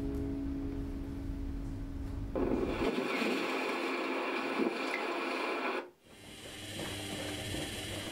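An acoustic guitar's last chord ringing and fading away. It is followed by about three and a half seconds of dense noise that cuts off suddenly, then fainter noise.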